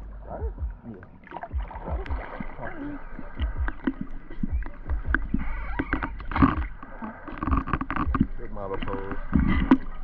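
Lake water sloshing and slapping against a camera held at the surface, in irregular low knocks and splashes, as swimmers pull themselves onto a boat close by.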